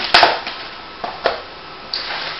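A cardboard box being put down, giving a sharp knock just after the start and a softer knock about a second later.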